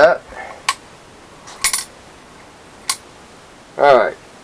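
Three sharp metal clinks, about a second apart, as a bent metal handle is knocked against and fitted onto a cast-iron sump pump housing.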